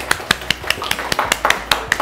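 A small group of about five people clapping their hands, a quick, uneven patter of claps in welcome.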